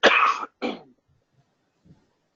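A person coughing twice, a longer cough followed quickly by a shorter one.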